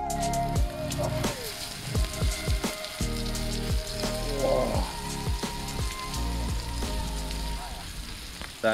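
Background music playing over the sizzle of fish pieces frying in hot oil in a pan.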